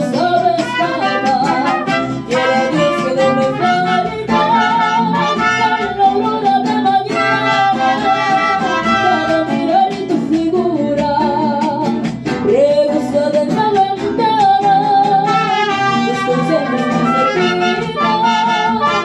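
Live mariachi band playing: trumpet and strummed guitars, with a woman singing into a microphone.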